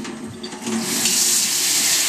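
Kitchen tap turned on about a second in, then running steadily into a plastic sprouter cup of seeds in a stainless steel sink, rinsing the seeds.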